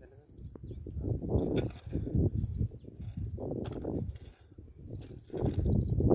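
Hand hoes chopping and scraping into dry soil while digging a furrow: irregular sharp strikes over a low rumble, with indistinct voices.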